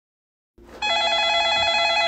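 A telephone ringing with a rapid trilling ring, starting just under a second in and stopping right at the end as the call is answered.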